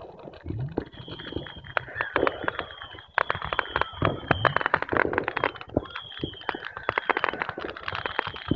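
Fireworks going off: rapid pops and bangs throughout, with a high steady whistle sounding over them several times.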